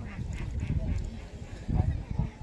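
Water sloshing and splashing around hands working a nylon gill net in shallow water, irregular and low-pitched.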